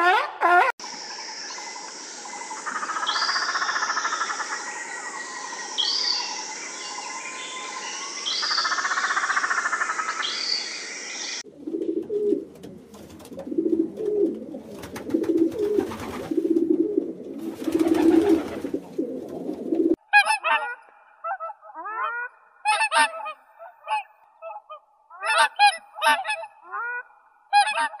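A steady noisy sound with repeated higher patterns in it runs through the first half. Then comes a feral pigeon's low, repeated cooing. From about two-thirds of the way in, many short honking calls from swans follow.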